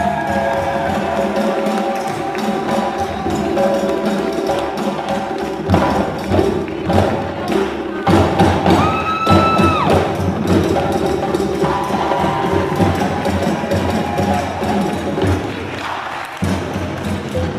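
Hand drums playing a steady, driving rhythm for African dance, with a held high call about halfway through.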